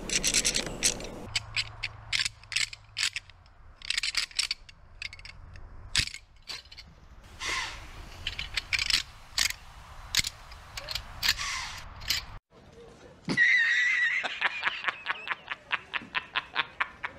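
Deer rattle bag being rattled, its hardwood pieces clacking and clicking in irregular bursts with a few longer rattles, the way a rattle bag imitates two whitetail bucks sparring. It cuts off suddenly about twelve seconds in, and a short wavering high-pitched sound with rapid ticking follows.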